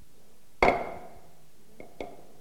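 Auctioneer's gavel struck once to close the sale of a lot: a sharp knock with a short ring, followed near the end by a much lighter knock.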